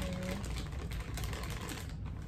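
Plastic bag of foil-wrapped chocolates crinkling and rustling as hands dig through it and handle the candies: a dense, continuous run of small crackles.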